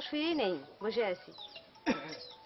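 A woman speaking, her voice sliding sharply up and down in pitch.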